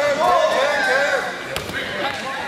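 People shouting with rising and falling voices, then a single sharp thud about one and a half seconds in as a judoka is thrown down onto the mat.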